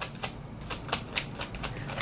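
A deck of tarot cards being shuffled by hand: a quick, irregular run of light clicks and snaps of card against card.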